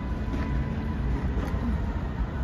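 Steady low rumble of city traffic, with a faint thin high tone that fades out about halfway through.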